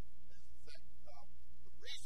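A voice speaking faintly in short phrases over a steady low hum.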